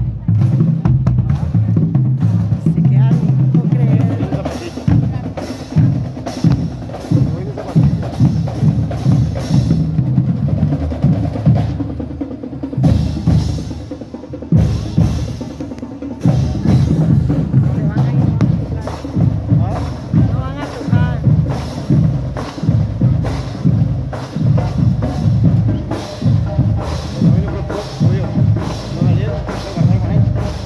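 Marching band drum line playing a steady parade cadence: bass drum beats about twice a second with snare drum and rolls.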